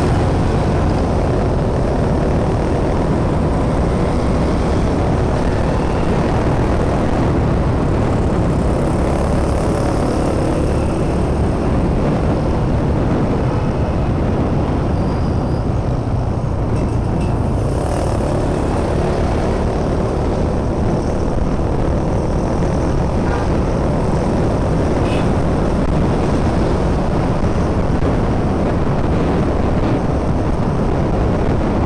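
Steady low rumble of a motorcycle ride in city traffic: the bike's engine mixed with road and wind noise, with no breaks or sudden events.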